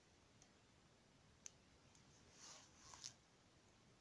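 Near silence with a few faint handling sounds of beadwork: a sharp small click about one and a half seconds in, then two short soft rustles, the second ending in a click, around two and a half and three seconds in.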